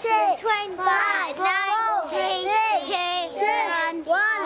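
A group of children chanting a countdown together in unison, "five, four, three, two, one", their high voices overlapping.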